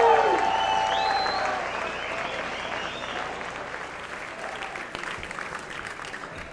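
Theatre audience applauding and cheering, with a rising whistle about a second in. The applause fades away over the following seconds.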